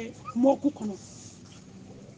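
A voice chanting the tail of a short phrase in the first second, then a pause of about a second.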